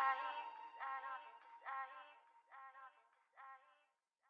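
Fading outro of a dubstep remix: a single processed vocal note repeats a little more than once a second, each repeat fainter like an echo, until it dies away near the end.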